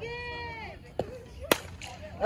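Fastpitch softball bat striking a pitched ball: one sharp crack about one and a half seconds in, put in play for a single. Before it, a voice calls out in a long drawn-out shout, and a smaller knock comes about a second in.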